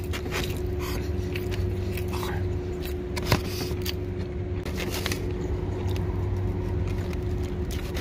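Close-up eating sounds: chewing, with short clicks and scrapes of a fork in a food container, and one sharp click about a third of the way through. Under it runs a steady hum inside a parked truck's cab.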